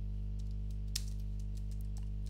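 A few computer keyboard keystrokes, the sharpest click about a second in, over a steady low hum.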